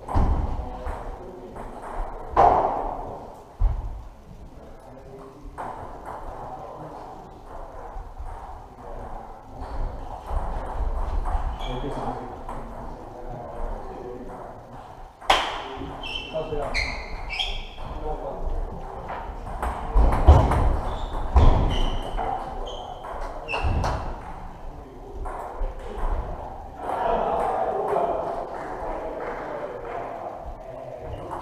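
Table tennis balls clicking off bats and tables from several rallies at once, irregular and overlapping, with a few louder knocks, in a large echoing hall. Voices carry across the hall.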